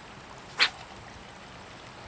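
A single short swish about half a second in, as a fishing rod is whipped forward in a cast, over faint steady outdoor background hiss.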